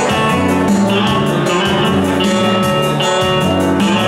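Instrumental music played live on a Yamaha electronic keyboard: sustained melody notes over a bass line and a steady rhythmic beat, with no singing.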